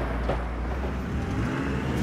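A motor vehicle's engine running with a steady low rumble.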